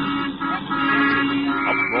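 Radio-drama sound effect of a taxi ride through city street traffic, with car horns tooting in long, repeated blasts.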